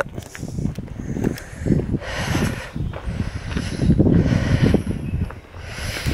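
Footsteps on a dry, stony dirt track with the rumble and knocks of a handheld camera being carried and tipped downward, coming irregularly.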